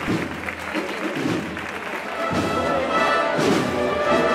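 Crowd applause and chatter, then about two seconds in a brass band strikes up a processional march and grows louder.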